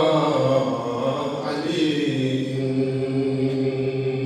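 A man's voice chanting a Gilgiti-language manqabat, a devotional praise poem, in a slow melody of long held notes, settling on one steady note from about two seconds in.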